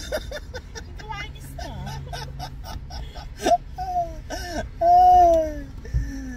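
People's voices inside a moving car, laughing and making wordless vocal sounds, with a loud, drawn-out high voice for about a second near the end, over low road rumble.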